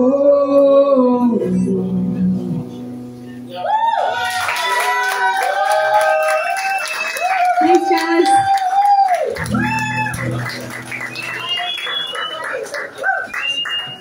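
A woman's last sung note held over a strummed acoustic guitar chord that rings out, then, from about four seconds in, audience applause with whooping and cheering voices.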